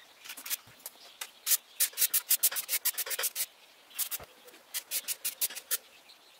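Steel plane blade rubbed back and forth on wet fine-grit sandpaper over a glass plate, in bursts of quick rasping strokes: sharpening or flattening the iron.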